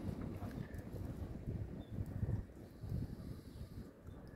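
Faint, uneven low rumble with irregular soft bumps: wind and handling noise on a handheld outdoor microphone.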